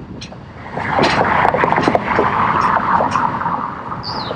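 A car overtaking close by on an urban avenue: its tyre and engine noise swells up about a second in, stays loud for about two and a half seconds, then fades.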